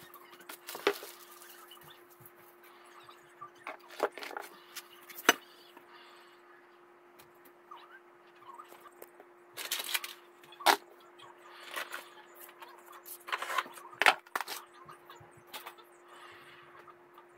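Household objects being handled and set down: scattered knocks, clunks and rustles at irregular intervals, the sharpest about five seconds in, over a steady faint hum.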